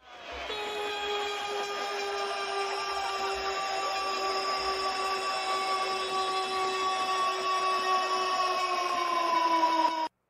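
A long horn blast of several pitches at once over a hissing rush, held steady, sagging slightly in pitch near the end and then cutting off sharply. It is an edited-in goal sound effect.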